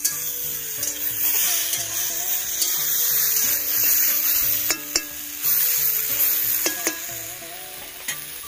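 Chopped vegetables sizzling as they fry in a steel wok, stirred with a metal spatula that clinks against the pan a few times in the second half.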